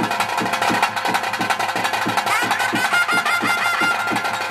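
Traditional ritual music: a barrel drum beaten in a steady, quick rhythm of about three to four strokes a second, joined about halfway through by a wind instrument playing a high, wavering, ornamented melody.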